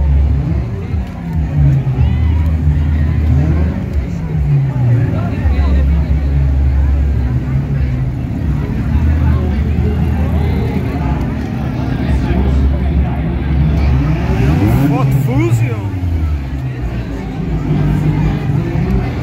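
Engines of vintage parade cars running and being revved again and again, the pitch rising and falling, over the chatter of a crowd.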